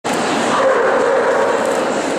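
A dog at a show giving one long drawn-out call, starting about half a second in and holding for over a second, over the steady murmur of a busy exhibition hall.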